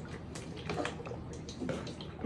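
Faint gulping of water from plastic water bottles, with scattered soft clicks and small bottle noises.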